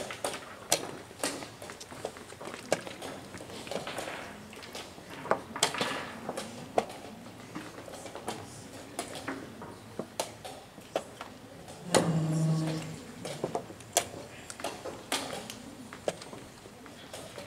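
Irregular sharp clicks and taps of wooden chess pieces being set down and chess clock buttons being pressed at several blitz games in the same room. A short low voice sound rises briefly about three-quarters of the way through.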